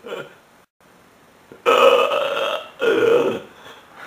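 A person's voice making two loud, drawn-out sounds that are not words: the first, about a second long, comes near the middle, and a shorter second one follows just after.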